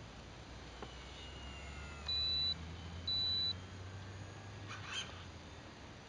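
Two short, steady, high-pitched electronic beeps about a second apart, over the faint, falling whine of a distant radio-controlled Extra 300S model plane's motor and propeller, with a low rumble underneath.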